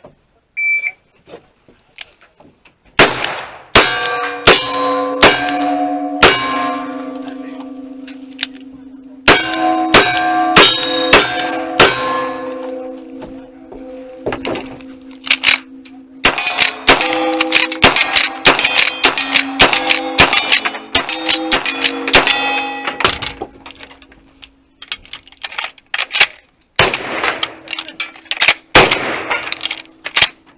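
Gunshots fired in quick strings at steel targets, revolver shots among them. Each hit leaves the steel plates ringing with a sustained clang, with short pauses between strings.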